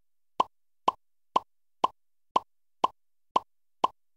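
Quiz-show sound effect: a short blip repeated evenly about twice a second, eight in all, each marking one more letter struck off the countdown alphabet on the game board.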